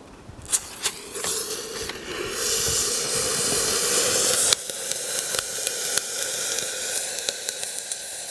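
Lit firework hissing and fizzing: the hiss builds from about a second in, is loudest for a few seconds, then drops suddenly about halfway through and keeps on more quietly with scattered crackles. A couple of sharp clicks come just before it catches.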